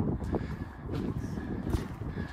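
Wind buffeting the microphone: an uneven low rumble, with a few short knocks.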